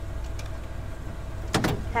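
Delivery truck engine idling, a steady low rumble.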